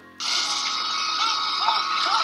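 A sudden, loud, harsh screech from a horror film's soundtrack, a jump-scare sting, breaking in just after the start and held steady.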